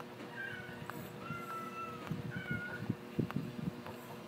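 Three high, thin animal cries, each held on one pitch; the middle one is the longest. Soft low knocks and a faint steady hum run underneath.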